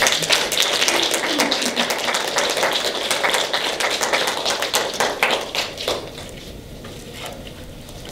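Audience applauding. The clapping thins to a few scattered claps about six seconds in.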